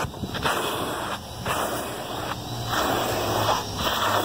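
Car-wash vacuum running with a steady rushing suction noise and a low motor hum, the noise dipping briefly every second or so as the nozzle is drawn over a short-haired dog's coat.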